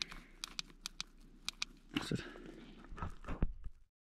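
Handling noise from a camping lantern on a foil sleeping mat: scattered sharp clicks through the first couple of seconds, then a few soft bumps with light rustling in the second half, cutting off suddenly just before the end.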